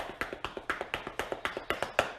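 Rapid, uneven tapping of fingers or fingernails on a hard surface, about seven taps a second, ending with one sharper tap.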